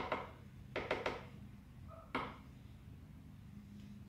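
A few light knocks and clicks of a plastic blender jar being handled on the countertop, a small cluster about a second in and one more about two seconds in, with quiet room tone between; the blender motor is off.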